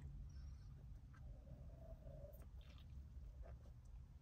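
Near silence: a steady low rumble of in-car room tone, with a few faint soft clicks and a faint short hum near the middle.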